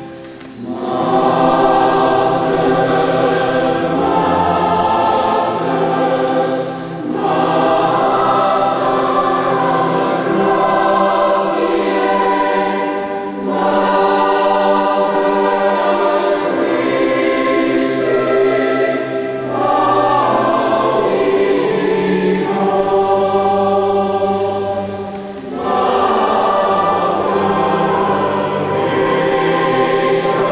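A choir of children's and men's voices singing, in phrases broken by short breaths about every six seconds.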